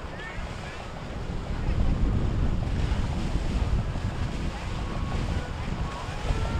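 Wind buffeting the microphone over the low rumble and water wash of a cabin cruiser motoring past close by, growing louder about a second and a half in.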